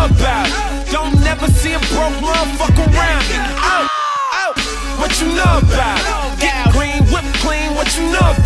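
Hip hop track: a heavy beat of deep bass and kick drums under vocals. The bass and drums drop out for under a second near the middle, then come back in.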